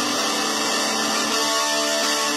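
Electric guitar playing a WWE entrance-theme riff, with held notes that change about one and a half seconds in.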